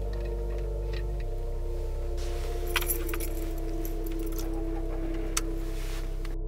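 A bunch of keys jangling, with a few sharp clicks, from about two seconds in, over a music score of steady, sustained low tones.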